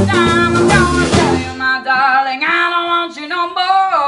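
A live blues band playing with a woman singing lead. About a second and a half in, the band stops and her voice carries on alone in a sustained, bending vocal run.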